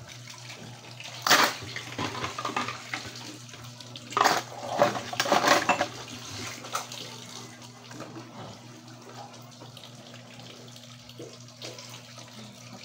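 Water splashing and pouring at a faucet into plastic laundry basins during hand-washing of clothes, with loud bursts about a second in and again around four to six seconds, then a quieter trickle.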